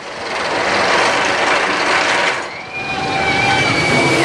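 Steel Vengeance roller coaster train rushing along its track: a loud, sustained roar that eases briefly about halfway through and then builds again. In the second half, a steady high-pitched tone rides over it and slides down at the end.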